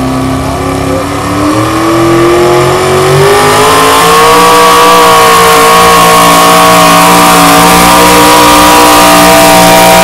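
A competition pulling tractor's engine running under full load as it drags a weight-transfer sled down the track. The engine revs climb over the first few seconds, then hold high and steady, very loud.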